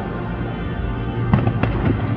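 Distant fireworks going off in a quick string of sharp bangs and crackles about a second and a half in, over far-off stadium concert music.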